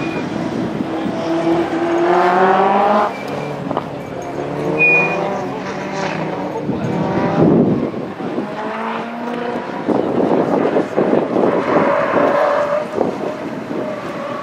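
Toyota MR2 Mk1's mid-mounted four-cylinder engine driven hard through a slalom, its pitch rising and falling repeatedly as it accelerates and lifts off between cones.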